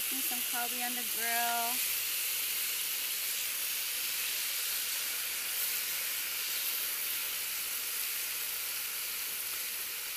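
Beef steaks sizzling steadily on a portable gas grill, a continuous high hiss. A brief voiced sound, like humming, comes in the first two seconds.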